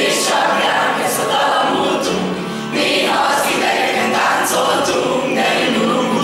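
A group of teenage schoolchildren singing a song together, with a short break a little past the middle.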